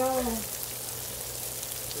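Steady rain falling, an even hiss that fills the pause once a single spoken word ends about half a second in.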